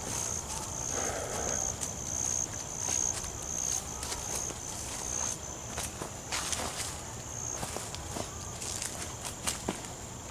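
Footsteps crunching through leaf litter on a forest floor, with an insect calling in a rhythmic, high-pitched pulsing buzz of about two to three pulses a second that stops about seven and a half seconds in.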